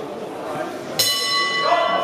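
Boxing ring bell struck once about a second in, leaving a clear metallic ring that fades slowly, the signal that starts the round. A murmur of voices in the hall runs underneath.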